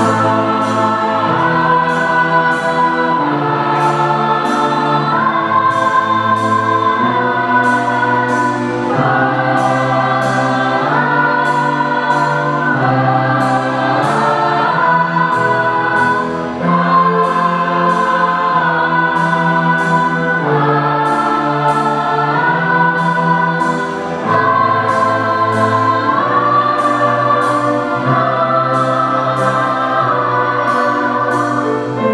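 A school orchestra of strings and piano with a choir performs a slow song, with sustained chords that change about every two seconds over a light steady beat.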